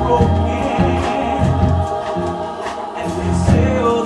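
Musical-theatre ensemble singing in chorus, holding notes over instrumental accompaniment with changing low bass notes.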